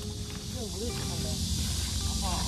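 Cicadas singing in a continuous chorus, heard as an even high-pitched hiss, with faint distant voices about a second in.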